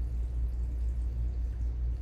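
Steady low hum with faint room noise and no distinct event.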